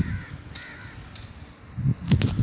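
Footsteps on a dirt road, with a bird calling twice, two short calls in the first second.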